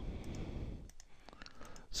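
Computer mouse clicking several times in quick, uneven succession as an on-screen button is pressed over and over.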